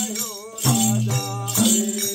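Bhailo folk song: voices singing with a madal hand drum and small brass cymbals keeping a steady rhythm, the cymbals adding a bright jingling shimmer.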